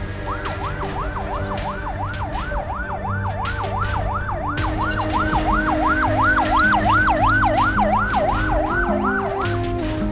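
Ambulance siren in a fast wail, its pitch sweeping up and down about three times a second, over background music with a beat. The siren stops shortly before the end.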